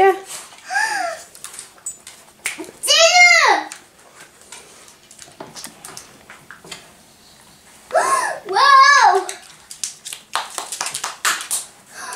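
A young child's high-pitched wordless calls, each rising then falling in pitch: one short call about a second in, a louder one around three seconds, and two more close together near eight to nine seconds. Light clicks and knocks sound in the gaps.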